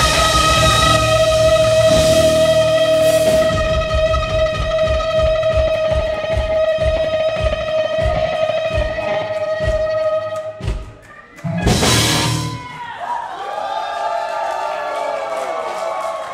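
A live rock band ending a song: an electric guitar holds one long sustained note while the drum kit's hits come faster and faster. A big final crash lands about twelve seconds in, then wavering, sliding tones ring on as it dies down.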